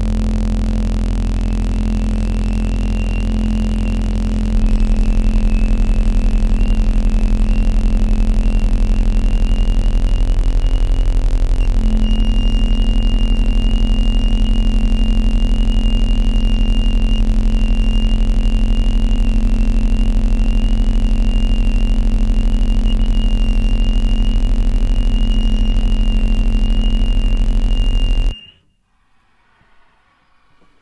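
Contemporary chamber music in complete stasis: bass flute, cello and clarinet hold long unchanging notes over loud electronic noise and a low 32 Hz sine tone, with a thin high tone running above. The mass gets louder about four seconds in and stops abruptly near the end, dropping to near silence.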